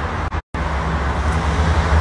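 Street traffic noise: a steady low rumble of passing vehicles, broken by a brief dropout to silence about half a second in.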